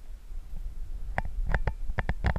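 Wind rumbling on the microphone of a handheld action camera, and from about a second in a handful of sharp clicks and knocks as the camera is handled and swung out over the bridge's steel railing.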